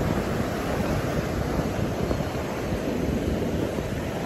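Sea surf breaking and washing up a sandy beach in a steady rush, with wind rumbling on the microphone.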